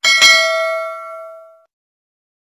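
Notification-bell 'ding' sound effect: a bright bell chime struck once and ringing out, fading away within about a second and a half.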